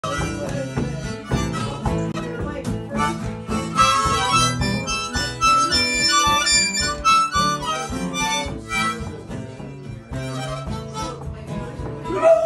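Small diatonic harmonica played as a melody, cupped in both hands, with guitar accompaniment underneath.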